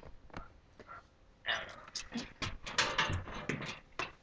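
A person's soft, breathy vocal sounds close to the microphone, in short irregular bursts through the second half, after a few faint clicks.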